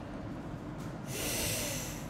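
A person breathing out hard through the nose close to the microphone: a hiss of just under a second starting about halfway through, over a steady low background hum.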